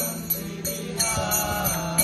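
Vaishnava devotional chanting sung by a voice into a microphone over a steady low drone, with small hand cymbals (kartals) struck about three times a second.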